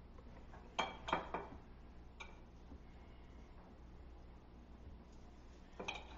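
Knife and fork clinking lightly against the dish as a cooked steak is cut: a few quick clinks about a second in, one near two seconds and another near the end.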